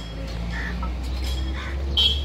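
Two short bird calls, about a second apart, over a steady low rumble.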